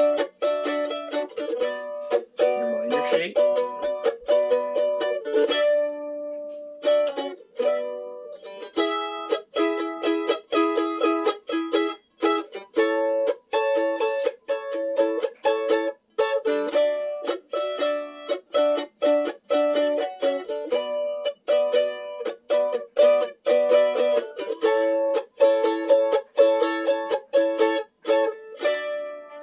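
Mandolin strumming a chord progression in D up the neck, using barred minor chord shapes. The strums are fast and even, with the chord changing every few seconds and a short break about six seconds in.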